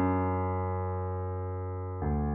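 A low piano note, played slowly, struck at the start and left ringing as it gradually fades, with the next low note struck right at the end.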